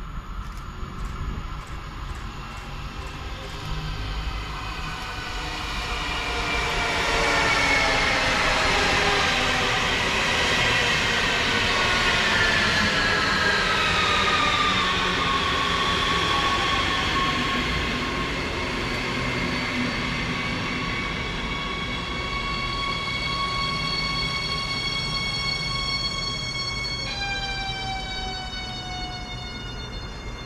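RRX Siemens Desiro HC electric multiple unit braking into the station over the rumble of its wheels. Its traction whine, several tones together, falls steadily in pitch for about the first fifteen seconds, then holds level, and shifts suddenly to a different set of tones near the end as the train comes almost to a stop.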